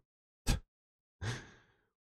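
A single short click about half a second in, then a person's short breathy exhale a little after one second that trails off.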